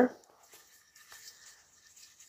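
The end of a spoken word, then only faint handling sounds: a few soft taps and rustles as a small square ink pad is picked up and brought to the paper.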